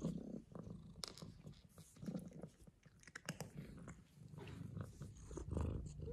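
A domestic cat purring, a faint steady low rumble, with scattered light clicks and rustles over it.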